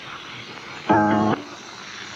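A man's brief held vocal sound, a steady hum or drawn-out 'ehh' of about half a second, about a second in. It sits over the faint hiss of an old radio tape recording.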